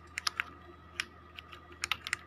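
Sharp clicks of a computer mouse and keyboard keys as text is copied and pasted: a quick group near the start, a single click about a second in, and a fast pair near the end, over a faint steady hum.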